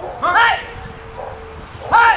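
German Shepherd giving two short, high barks, about a second and a half apart.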